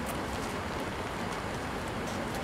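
Steady rain falling, with a few scattered drops tapping on an umbrella held close by.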